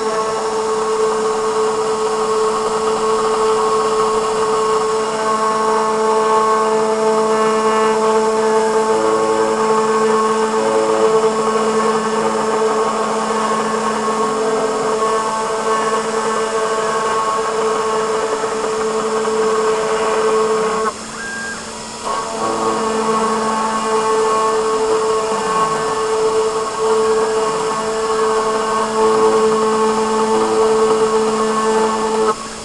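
Desktop CNC router's spindle running at full speed, a steady high whine, as the bit engraves a shallow cut about five thousandths of an inch deep into a box mod's cover. Shorter tones come and go over it as the stepper motors move the bit. The whine dips for about a second two-thirds of the way through.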